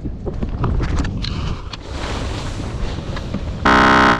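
Wind buffeting the microphone, with a few light knocks from handling the kite bar and lines. Near the end a short, loud electronic buzzer sound effect: the 'wrong' signal for a mistake.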